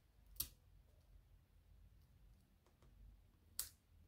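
Two short, faint clicks about three seconds apart against near silence: fingertips and nails pressing small paper planner stickers down onto the page.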